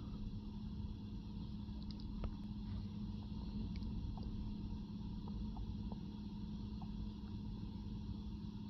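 Faint steady low hum inside a car's cabin, with a few light ticks scattered through it.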